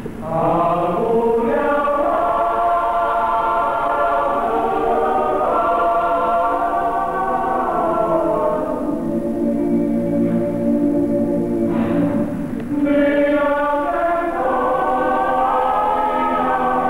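Male choir singing sustained chords in several voice parts, with a short break between phrases about twelve seconds in.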